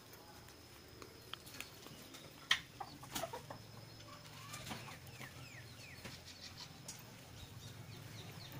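Faint farmyard fowl clucking, with a few short falling chirps about five seconds in and scattered light clicks.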